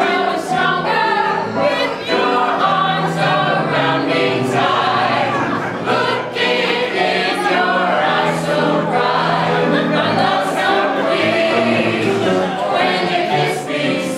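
A small mixed ensemble of men's and women's voices singing together in harmony, without pause.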